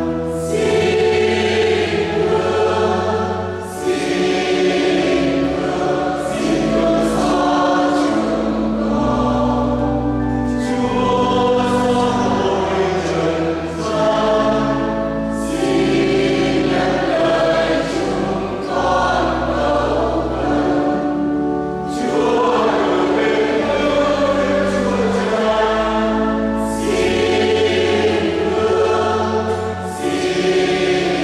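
A church choir sings a Vietnamese hymn in full voice. The phrases swell and break every few seconds over a low, sustained accompaniment whose notes change with the phrases.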